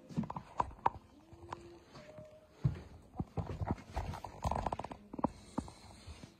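Irregular knocks and thuds from a phone being handled and lowered, with two short squeaks, the first about a second in and the second, higher, about two seconds in.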